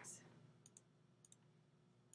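Near silence with a few faint computer mouse clicks, in two quick pairs, as layers are selected and toggled in Photoshop.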